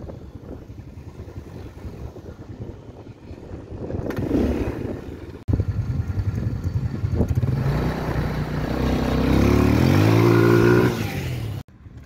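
ATV engine running with the rough rumble of riding over sand. After an abrupt break about halfway, the engine revs, its pitch climbing for a second or two and holding high before it cuts off suddenly near the end.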